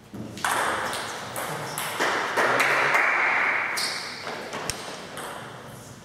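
Table tennis rally: the celluloid-type ball is struck back and forth by the bats and bounces on the table, a sharp click about every half second, each ringing on in the reverberant hall.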